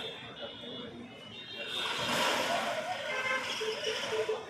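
A car driving along the street, its noise swelling about two seconds in, with voices around it.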